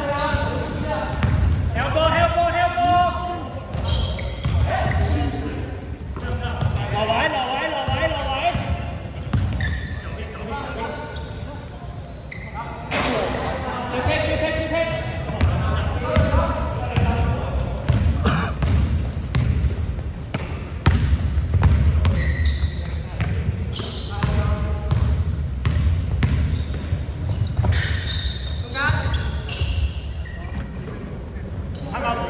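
A basketball game in a large echoing gym: the ball bouncing on the hardwood court, with players' shouted calls through the play.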